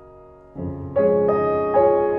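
Slow background piano music: a held chord dies away, then new notes are struck about half a second in and again about a second in, each ringing on and fading.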